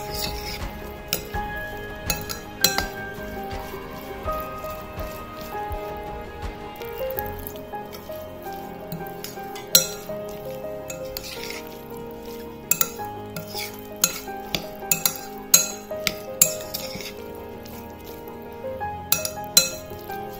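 A metal spoon clinking and scraping against a glass bowl as it stirs a damp semolina and chopped-vegetable mix, in irregular clusters of sharp clicks. Background music with held notes plays throughout.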